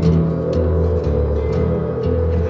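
Instrumental music with sustained low bass notes and held chords, without singing.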